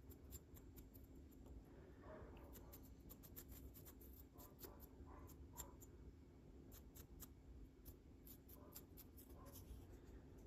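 Faint, quick scratchy strokes of a wide soft-bristled dry brush across a tiny 1/285-scale model boat, with many light ticks.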